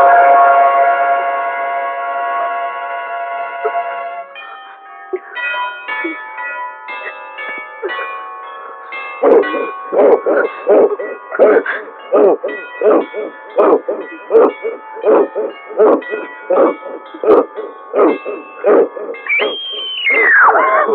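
Suspense film score: a held keyboard chord that fades after about four seconds, a few sparse notes, then from about nine seconds a steady pulsing beat a little under twice a second. Near the end a high cry slides steeply down in pitch.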